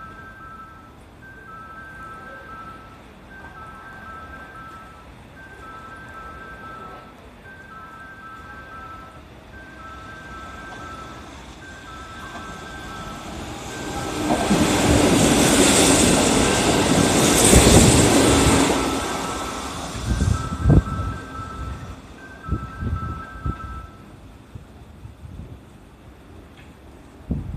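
A Kintetsu 30000 series (Vista EX) electric limited express train running past the platform at speed. Its noise swells to a loud peak about two-thirds of the way in, then fades, followed by a run of sharp wheel clacks over the rail joints. Throughout, an alternating two-tone warning chime repeats and stops near the end.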